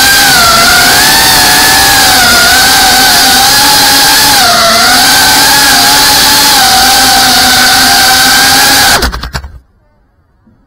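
Geprc CineLog 35 cinewhoop FPV drone's motors and propellers whining loudly, the pitch wavering up and down with the throttle in low flight. The whine cuts off suddenly about nine seconds in as the drone lands.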